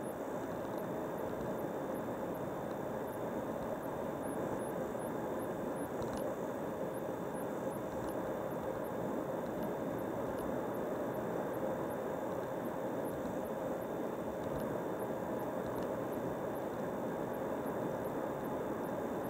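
Steady road and engine noise of a car driving at highway speed, heard from inside the cabin: an even rumble and tyre hiss with a faint steady hum, unchanging throughout.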